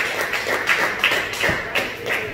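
A few scattered hand claps, about two a second, from a small congregation.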